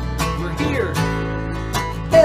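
Steel-string acoustic guitar strumming chords, with an acoustic bass guitar playing a line underneath, in an instrumental passage of a folk song. The strokes fall a little under a second apart.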